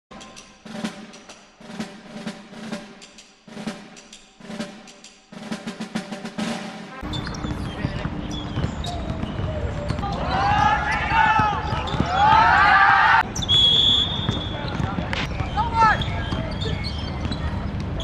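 Title music with drum rolls and snare hits for about the first seven seconds, then an abrupt cut to live pitch sound. A team huddle of youth footballers shouts loudly together, a single whistle blast about a second long follows, and then scattered shouts come from the players.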